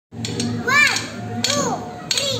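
A child's high voice in two short calls that rise and fall, with a few sharp drumstick taps near the start and again at about one and a half seconds.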